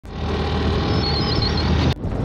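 Motorbike engine running steadily while riding, with wind rushing over the microphone. A few short high chirps are heard around the middle, and the sound breaks off abruptly near the end.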